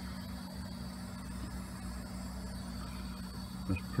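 A steady low hum in the background, with a faint, steady high tone above it.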